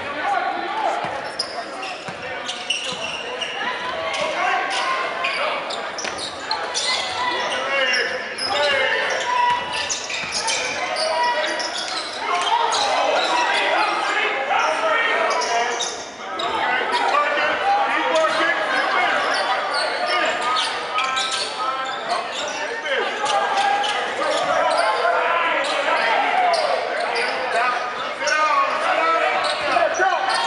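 Basketball being dribbled on a hardwood gym floor, with the voices of players and spectators throughout, echoing in a large gymnasium.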